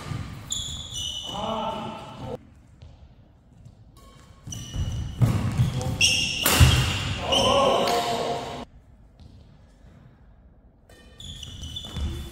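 Indoor doubles badminton rally: shoes squeaking on the synthetic court mat, sharp racket strikes on the shuttlecock around the middle, and players' shouts. Two quieter lulls fall between rallies.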